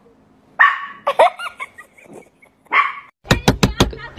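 A dog barking in short bursts, three times. Near the end comes a quick run of sharp knocks or taps, about six a second.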